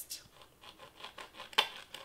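Faint scratching as a glue bottle's nozzle is rubbed along a styrofoam wreath form while crepe-paper streamer is handled, with one sharp click about one and a half seconds in.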